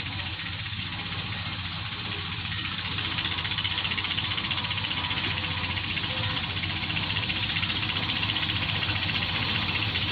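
Engine of a wheat-cutting machine running steadily, growing a little louder about three seconds in.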